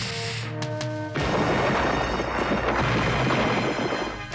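Cartoon music, then about a second in a loud, continuous crash and rumble of boulders tumbling down: a rockslide sound effect.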